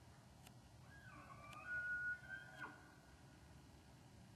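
Distant bull elk bugling: one high whistled call that glides up, holds a high note for about half a second and then breaks off.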